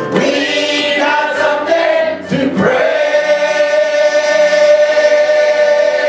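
Church choir singing a gospel song with electric keyboard accompaniment. About two and a half seconds in the voices settle onto one long held chord.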